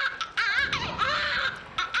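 Newborn baby crying in high, wavering wails, two cries with a short gap between, played back from a video through a hall's loudspeakers.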